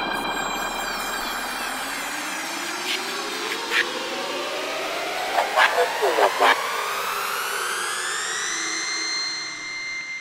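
Drum and bass intro build-up: a synth riser climbing steadily in pitch over a wash of noise, with a few short vocal snippets around the middle.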